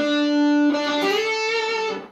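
Gibson Les Paul electric guitar playing single sustained notes of a solo lick: one held note, then a higher note that rises slightly in pitch and rings until it is cut off near the end.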